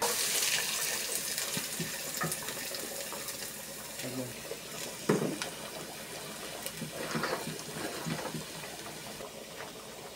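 Chopped onion dropped into hot oil in a frying pan, sizzling loudly at once and then settling into a steady frying hiss. A few light knocks sound partway through.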